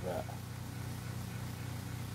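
A steady low hum with no other sound, after the last of a spoken word at the start.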